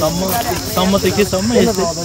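People talking over a steady high-pitched drone of insects.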